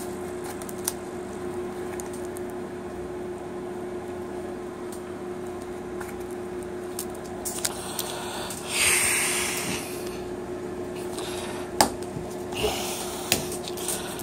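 Handling of a nylon double pistol-magazine pouch on a gun belt over a steady low hum. A scraping rasp comes about nine seconds in, then a shorter one and a few sharp clicks near the end.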